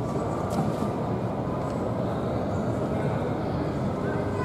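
Airport terminal ambience in a busy gate area: a steady low rumble with no clear voices, faint people's activity under it.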